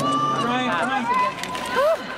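Spectators' voices shouting and calling out in pitch-gliding yells, with a loud rising shout near the end.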